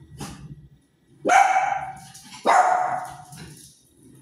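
A dog barking twice, about a second and a quarter apart, each bark trailing off.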